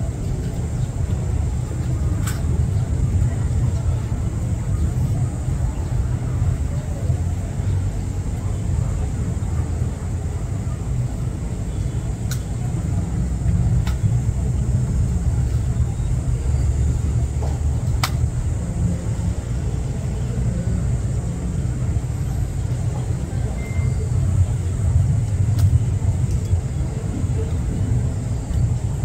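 Steady low rumble of wind buffeting the microphone outdoors, with a few sharp clicks spaced several seconds apart.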